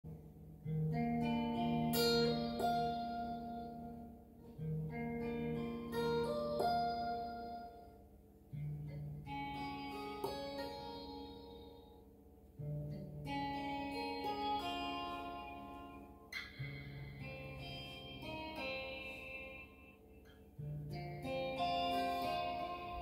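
Electric guitar playing a math-rock phrase of ringing, picked chord notes. The phrase repeats, each new pass opening with a low note about every four seconds.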